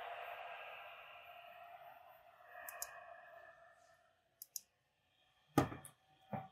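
Faint clicks: one about halfway through and a quick pair shortly after, over a low hum that fades away.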